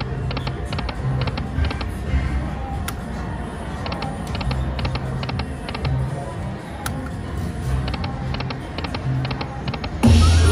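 Golden Century video slot machine spinning its reels twice: quick groups of electronic clicking sound effects repeating several times a second as the reels spin and stop, over low pulsing tones and background music.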